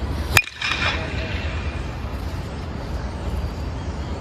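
A 2022 Louisville Slugger Select PWR two-piece hybrid BBCOR bat hitting a pitched baseball once, a sharp crack with a brief ringing ping, about half a second in. Wind rumbles on the microphone throughout.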